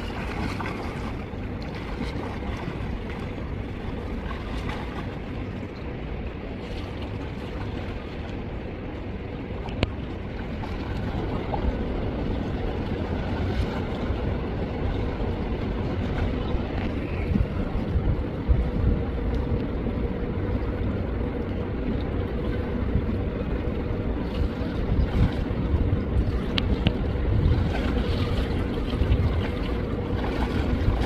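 Steady low rumble of wind on the microphone, mixed with the wash of pool water as a swimmer swims breaststroke. It grows louder and choppier about a third of the way in, under a faint steady hum.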